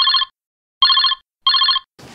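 A telephone ringing in quick double rings, each ring a short, fast trill.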